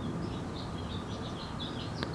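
Small birds chirping, a run of short high calls repeating through most of the stretch, over a steady low background noise.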